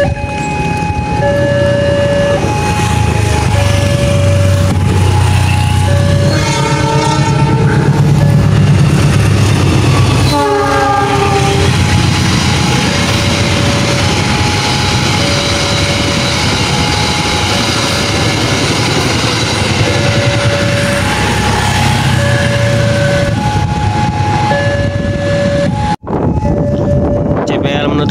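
Level-crossing warning signal alternating between two tones, while a diesel-hauled passenger train approaches and passes. The locomotive engine builds to a low rumble, its horn sounds about six seconds in and again briefly around ten seconds, and then the carriages roll past with steady wheel noise.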